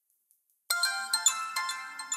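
Mobile phone ringing with a chiming melodic ringtone for an incoming call, starting suddenly about two-thirds of a second in after silence.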